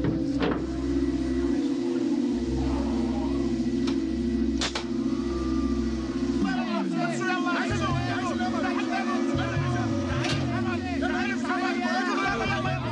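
Movie soundtrack: a low steady drone with a few sharp knocks, then from about six and a half seconds in a confused babble of many overlapping voices.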